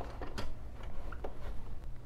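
A paper towel being wiped and handled in a gloved hand on a dental chair, giving scattered light clicks and rustles over a low steady hum.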